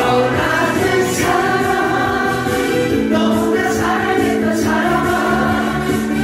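A singer performing a Korean trot song live into a microphone over a karaoke backing track, with long held notes; a pulsing bass beat comes in about halfway through.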